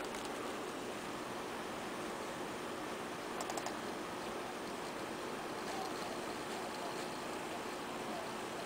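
Wired Microsoft computer mouse clicking: a few quick clicks about three and a half seconds in, with fainter ones later, over a steady background hiss.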